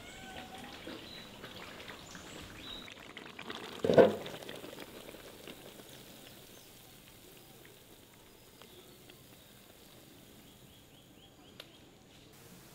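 Thick pineapple halwa poured from a wok into a metal tray: one heavy plop about four seconds in as the mass drops into the tray, then a soft sliding and scraping sound that fades away.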